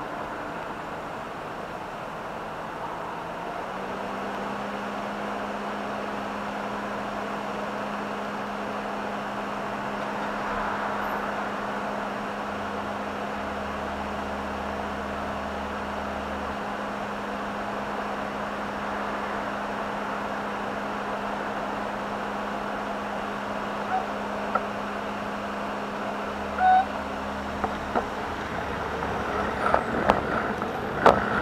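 Street traffic noise with an engine idling close by, a steady hum that starts a few seconds in and holds until near the end. A few short clicks come near the end.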